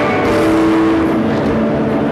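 A jet aircraft roaring overhead, mixed with a live rock band playing held, distorted electric-guitar notes.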